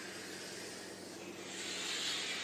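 Chalk scraping steadily on a chalkboard as a long oval loop is drawn, a soft hiss that grows louder in the second half.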